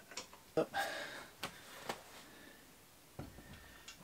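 Scattered light metal clicks and knocks, with a short rattling scrape about a second in, from a fat-tyre bike-trailer wheel and its axle being handled and fitted into the trailer's metal frame.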